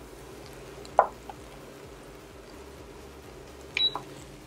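Quiet steady kitchen background with one short knock about a second in. Near the end, a short high beep from the induction cooktop's control panel as its heat is switched off.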